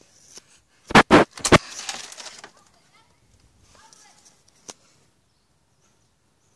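Three loud, sharp bursts about a second in, followed by a short rush of noise, then faint shouting voices of children.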